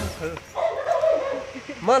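A young pit bull gives a short whine, lasting about a second.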